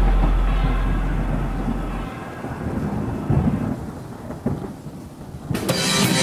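A deep, thunder-like rumble dying away, with a steady low bass tone that cuts off about two seconds in. Drum-led music starts near the end.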